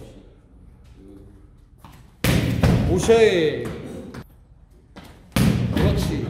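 A jokgu ball kicked hard twice, two sharp thuds about three seconds apart that echo in a large hall.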